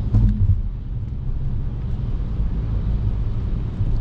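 Opel Insignia driving slowly on a slushy, salted road, heard from inside the cabin: a steady low rumble of engine and tyres.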